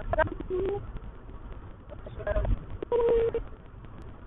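A woman's voice, garbled and unintelligible, in short flat-pitched stretches over the low rumble of a car cabin on the move.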